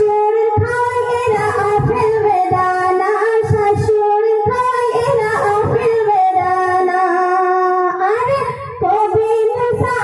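A young woman singing a Bengali gazal into a microphone, amplified through a PA. She holds long notes and slides up in pitch a little before the end.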